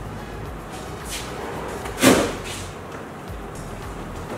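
Kitchen trash can banging once, sharply, about halfway through as something is thrown into it, with a lighter scrape about a second earlier.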